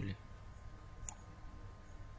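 A single sharp computer mouse click about a second in, over a faint steady hum. The last syllable of a spoken word ends right at the start.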